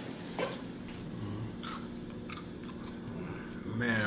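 A person chewing and biting into food, with a few short wet mouth clicks, over a steady low hum.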